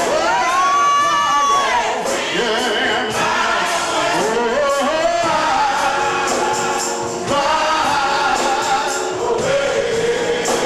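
Gospel choir singing, with a long held note near the start that arches up and falls back.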